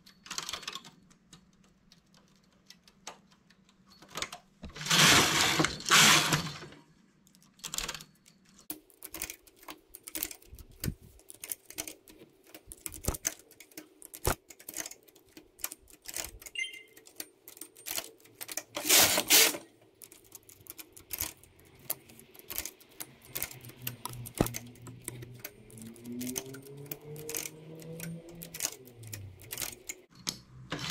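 Many small metallic clicks and ticks as a two-prong transfer tool lifts stitches and sets them onto the metal needles of a domestic knitting machine. The carriage is run across the needle bed in three loud rushing passes: two about five seconds in and one near the middle.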